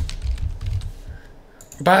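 Computer keyboard being typed on: a quick run of keystrokes that stops about a second in.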